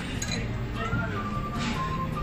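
A few clinks of chopsticks against a metal hot pot and tableware, over background music and voices.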